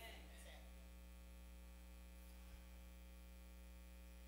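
Near silence with a steady low electrical mains hum.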